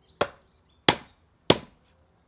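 Carved wooden mallet driving a bevelled wooden leg into an augered hole in a split cedar log sawhorse: three sharp wood-on-wood knocks, about two-thirds of a second apart.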